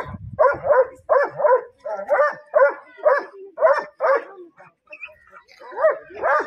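A dog barking repeatedly, about two barks a second. The barks pause briefly around four and a half seconds in, then start again near the end.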